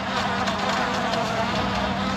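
Steady buzzing hum of a cluster of honey bees in an opened hive, one constant low pitch over a steady rushing noise.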